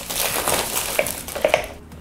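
Crinkling and rubbing of a plastic-film-wrapped cardboard earbud box as hands work it open, a noisy rustle with small clicks.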